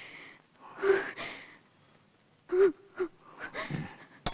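A woman's frightened, gasping breaths: one sharp gasp about a second in, then three quick ones in the second half, each with a short catch in the voice.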